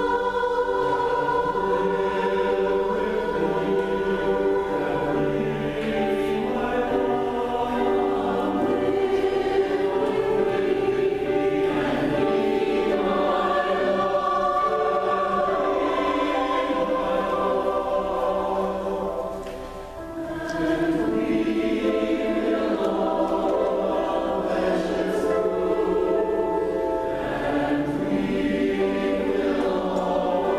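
Mixed choir of women's and men's voices singing a slow song in parts, with piano accompaniment. The singing dips briefly for a break between phrases about two-thirds of the way through, then resumes.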